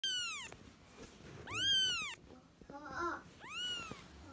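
Very young kitten mewing: three high-pitched cries, each about half a second long and rising then falling in pitch, spaced about a second and a half apart. A lower, shorter call sounds about three seconds in.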